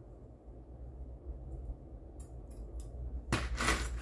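Scissors snipping lace with a few faint, light clicks, then a louder brushing sound near the end as the lace is pressed flat onto a paper tag, over a low steady room hum.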